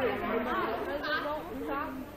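Chatter of several people's voices, fainter than the close speech around it.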